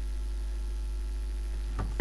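Steady low electrical mains hum, with nothing else of note.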